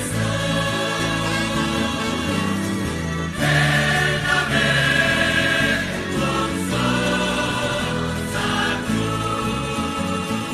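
A choir singing a slow hymn in held, sustained chords over a low accompaniment.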